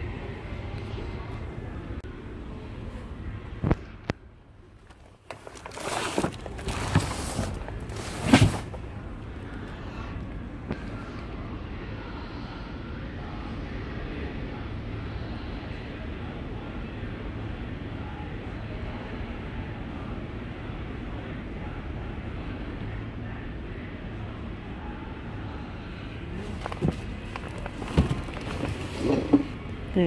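A large cardboard box is handled: several knocks and scrapes a few seconds in and again near the end, over steady background noise.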